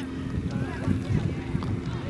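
Wind rumbling on the microphone with a steady low hum, over distant shouting voices of players and spectators on a football field.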